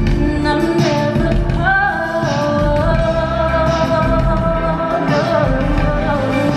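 Live band music: a high lead voice sings long held notes that slide up about two seconds in and drop again near the end, over electric guitars and a deep bass line.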